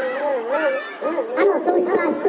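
Dog-like howling over a sound system: one long, wavering howl, then a few shorter yelping calls in the second half.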